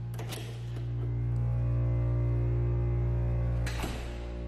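Air compressor running inside a carpet-lined baffle box, a steady low hum that grows somewhat louder about a second in, under background music.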